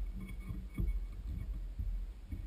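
Handling noise at a fly-tying vise: irregular low thumps and rubbing as hands work material onto the hook, over a low steady rumble.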